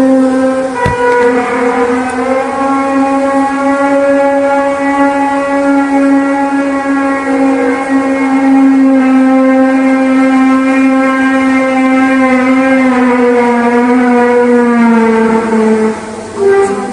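A long, loud, trumpet-like drone with many overtones, holding one pitch and sagging slightly lower near the end before cutting off. It is one of the so-called 'sky trumpet' sounds, whose cause is unexplained.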